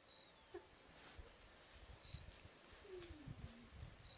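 Faint bird calls: two short high chirps and a lower call that falls in pitch near the end.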